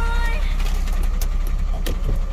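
Car stopped at a light with its engine idling, heard from inside the cabin as a steady low rumble. Two sharp clicks come about a second in and near the end.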